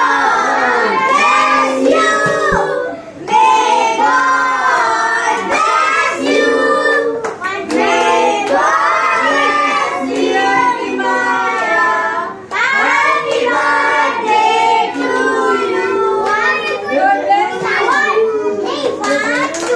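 A group of children and adults singing a birthday song together and clapping along, with short breaks between phrases about three seconds in and again near twelve seconds.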